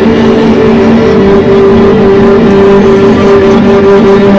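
Amplified violin bowed hard through heavy effects: a loud, gritty, distorted drone with a steady held low note and its octave above, over a rough noisy wash.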